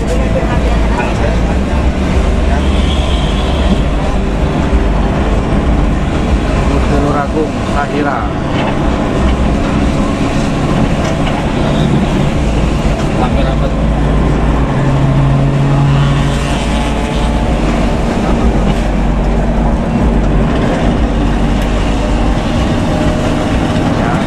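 Bus engines and road noise at highway speed heard from inside a following bus's cabin: a steady low rumble that includes the growling ('ngorok') aftermarket exhaust of the bus just ahead.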